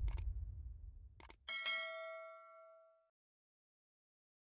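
Subscribe-button animation sound effect: two quick mouse clicks about a second in, then a single bell ding that rings and dies away over about a second and a half. Before it, a low outdoor rumble fades out.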